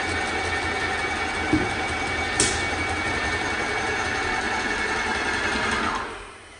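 Graco 390 PC airless paint sprayer's motor and pump running steadily with a faint whine while it pumps water into the hose to pressurize it. Two brief knocks come about one and a half and two and a half seconds in, and the running falls away right at the end.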